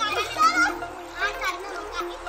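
Children's voices calling and shouting over background music with steady held notes.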